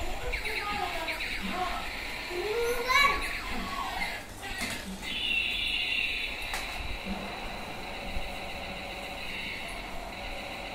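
A battery-powered light-up tank robot toy plays its electronic sound effects as it drives across a tiled floor. A child's voice is heard over it, loudest around three seconds in. A steady high electronic tone from the toy runs from about halfway through.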